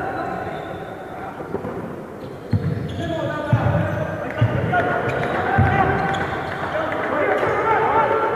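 A basketball bouncing on the court floor: about four separate thumps roughly a second apart, a couple of seconds in, under the chatter of players' and spectators' voices.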